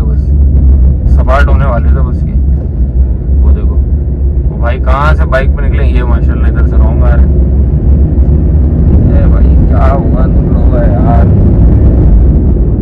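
Steady low rumble of a vehicle moving through road traffic, heard from on board, with brief muffled voices over it.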